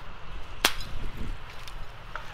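A single sharp crack of an air rifle shot, a little over half a second in.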